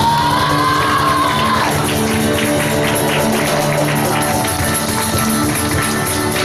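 Live acoustic trio of strummed acoustic guitar, piano and cajón, with a male singer's voice sliding up into a long high note that he holds for about a second and a half at the start. The band plays on under it, with a run of cajón hits.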